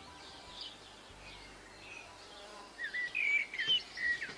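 Birds calling outdoors: faint high calls at first, then a run of short, louder chirps from about three seconds in.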